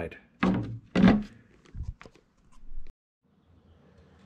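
Plywood boards of a wooden shipping crate being handled and knocked against the crate: two solid thunks about half a second apart, then a few lighter knocks.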